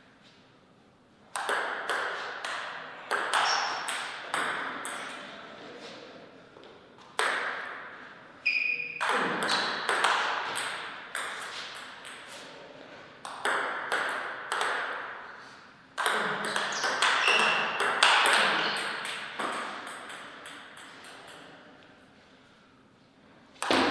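Table tennis ball clicking back and forth off the paddles and the table in fast rallies. The hits come in bursts of several seconds, with short pauses between points.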